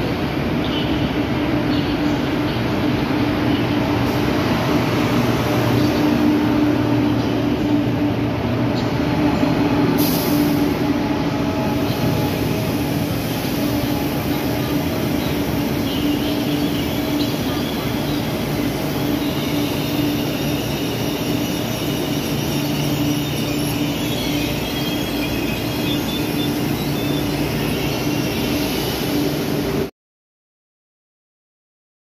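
KTX-Sancheon high-speed train rolling slowly along the platform as it pulls in, with a continuous rumble and a steady low hum. Thin high-pitched wheel squeal joins in from about halfway.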